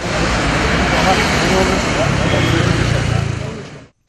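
Loud street noise: traffic with indistinct voices in the background, cutting off suddenly near the end.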